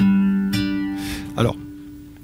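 Nylon-string classical guitar playing an F major chord in a four-finger shape with its bass on the D string. A bass note is plucked at the start and the upper strings join about half a second later. The chord is then left to ring and fade away.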